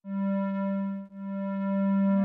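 Background music: a sustained electronic note starting abruptly out of silence, with a brief break about a second in before it holds again.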